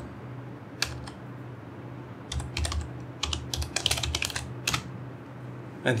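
Typing on a computer keyboard: a single keystroke about a second in, then a quick run of keystrokes in the middle, over a low steady hum.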